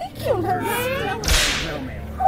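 A high-pitched voice speaking in short, gliding phrases, cut by a brief, sharp swish of noise about one and a half seconds in.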